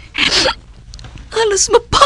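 A short hissing rasp, then a woman's voice starts speaking near the end, with a sharp click just before it breaks off.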